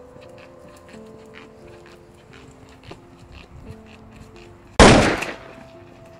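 Soft background music of slow, held notes, cut across about five seconds in by a single loud gunshot with a short echoing tail.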